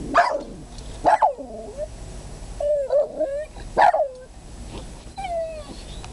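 Jack Russell terrier barking and whining in alarm at a ceramic rabbit ornament: three sharp barks, with a wavering whine between the second and third.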